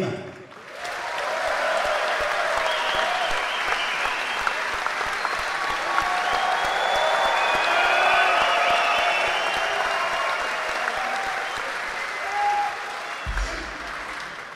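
Concert audience applauding and cheering after a band member is introduced, swelling about a second in, holding steady, and dying away near the end.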